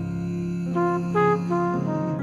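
Instrumental passage of a slow jazz song between vocal lines: a brass horn plays a short melodic phrase over held low notes.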